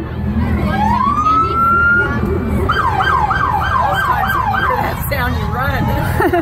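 Police car siren sounding in short spells: a rising wail held briefly, then a run of quick yelp sweeps, about three a second, over a low engine and crowd rumble.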